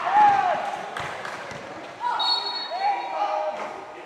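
Basketball game sounds: voices shouting and calling out in short bursts, with a single ball bounce about a second in.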